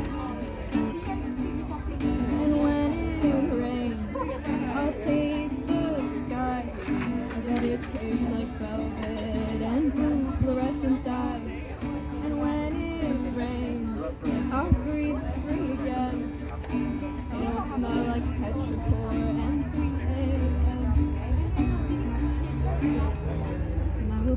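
A woman singing with her own acoustic guitar accompaniment, performed live.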